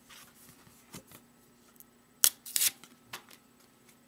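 A sheet of thin printed card stock being handled, rustling quietly, with two sharp crisp crackles a little past halfway.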